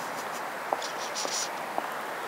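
Steady background hiss with a few faint taps about half a second apart: footsteps walking away on pavement.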